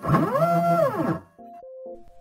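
Synthesized logo-intro sound: a pitched tone that rises and then falls in one sweep over about a second, followed by quieter held synth notes with short repeated pulses.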